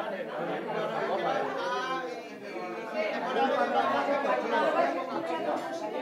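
Chatter of many people talking at once around restaurant tables, overlapping conversation with no single voice standing out, in a large room.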